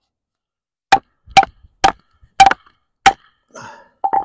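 A wooden baton striking the spine of a D2 steel tanto fixed-blade knife (Takumitak Charge) to drive it through a log and split it: five sharp knocks about half a second apart, each with a short metallic ring from the blade.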